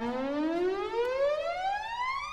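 A break in a 1984 disco-funk record: the beat drops out and a single siren-like synthesizer tone glides steadily upward in pitch.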